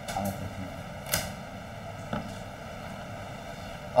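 Steady background hiss on a computer microphone, with a brief sharp noise about a second in and a fainter one about two seconds in.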